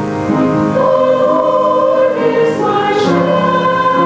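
Mixed choir of men and women singing in held notes, with piano accompaniment.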